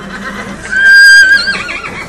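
A horse whinnying: one loud high call, held steady for about a second, then breaking into a wavering trill as it fades.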